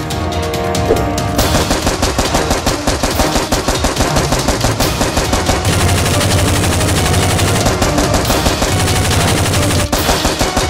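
Dubbed-in automatic gunfire sound effect: a fast, unbroken stream of shots starting about a second and a half in and running on, loud, over a bed of background music.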